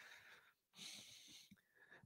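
Near silence, with one faint breath drawn in just under a second in.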